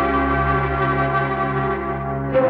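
Film background music: sustained bell-like chiming tones over a low held bass note.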